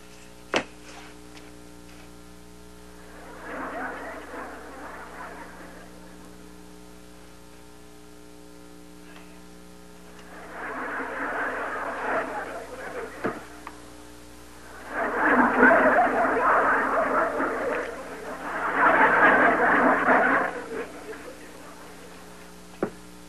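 Sitcom laugh track: four swells of audience laughter, the last two the loudest and longest, over a steady electrical hum. A sharp click comes just after the start.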